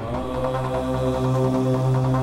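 Dramatic background music: a new cue of steady held notes over a low drone comes in sharply at the start.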